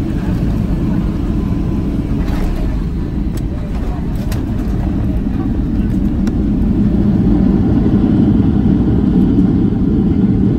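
Cabin roar of a Boeing 757-300 on its landing roll, a steady low rumble of engines, airflow and runway, with a few sharp knocks and rattles in the cabin. The ground spoilers are up and the rumble grows louder about seven seconds in as the jet decelerates on the runway.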